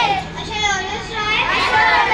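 A group of children reciting a pledge together in chorus, their voices blended so that no single speaker stands out.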